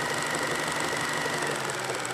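A steady, fast mechanical rattle, laid on as a sound effect over a flash-and-film-burn video transition.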